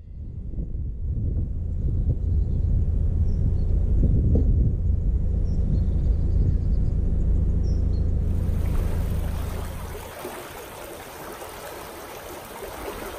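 Steady low rumble of a narrowboat under way, with wind on the microphone, giving way about ten seconds in to the rushing of turbulent, churning water.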